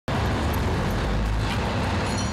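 Steady road-vehicle noise: a continuous low engine and traffic rumble.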